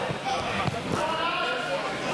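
Background chatter of several voices in a large gym hall, with a couple of dull thumps, one just after the start and one a little before halfway.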